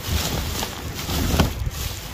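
Plastic bags and wrapped items rustling and clunking as gloved hands rummage through a plastic storage tote, with a sharp knock about a second and a half in, over a steady low rumble.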